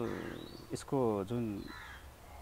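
A man's voice, drawn out over about a second, with a bird calling faintly in the background outdoors.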